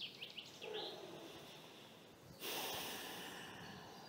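A person's breath rushing out into the microphone, starting suddenly about halfway through and fading over a second or so. Small birds chirp faintly at the start.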